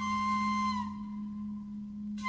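Bansuri (bamboo Indian flute) holding one long note that dips slightly and fades to a thin pure tone about a second in, then breaks off for a breath near the end. A steady low hum sits beneath it.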